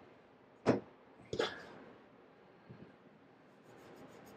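Two short, sharp knocks about two-thirds of a second apart, from a small bottle and cleaning things being handled on a tabletop, then only faint handling sounds.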